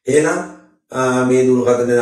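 Only speech: a man talking, his voice held at an even pitch for a long stretch from about a second in.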